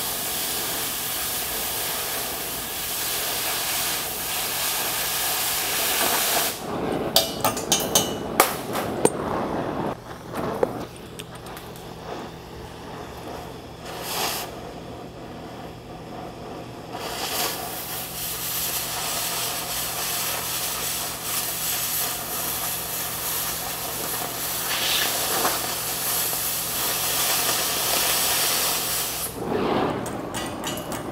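Oxy-acetylene cutting torch hissing steadily as it flame-cuts through the steel flange of an I-beam. About a third of the way in the hiss drops away for several seconds, with a few sharp clicks, then it comes back and runs on.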